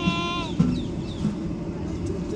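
A child's voice holding a long note that stops about half a second in, followed by a single thump over a steady low background rumble.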